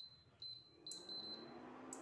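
Induction cooktop's touch panel beeping as it is switched on and set: a short high beep, another about half a second later, then two more close together about a second in, the last trailing off. A sharp click follows near the end.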